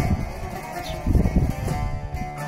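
Instrumental passage of three bağlamas plucked and strummed together, a Turkish folk tune, with no singing. About a second in there is a burst of low rumble.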